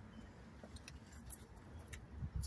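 Quiet outdoor ambience with a few faint, light, high-pitched clicks and jingles in the second half, over a low faint rumble.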